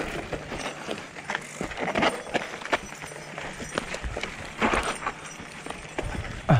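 Mountain bike riding over a rough, rocky dirt trail: tyres crunching on gravel, with irregular rattles and knocks from the bike as it rolls over rocks.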